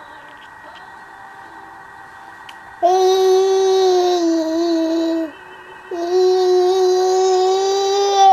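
A toddler "singing" along in two long, steady held notes, the first starting about three seconds in and the second a second after it ends.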